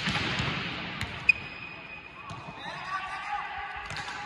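A volleyball struck hard with a loud bang right at the start, echoing through a large indoor sports hall, followed by a lighter click about a second in and a sharp smack just after. Voices call out near the end.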